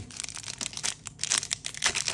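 Pokémon card booster pack's foil wrapper crinkling and tearing as it is struggled open, a quick run of crackles.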